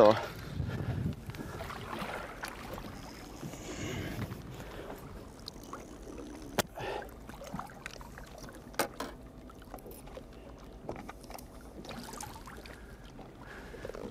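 Lake water lapping against a fishing boat's hull with a low wind rumble, broken by a few sharp clicks and knocks from handling gear on the boat.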